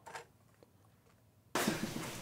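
Near silence, then about one and a half seconds in, playback of a film scene's production sound recording starts suddenly: a steady hiss of mic and background noise with faint ticks, before any dialogue.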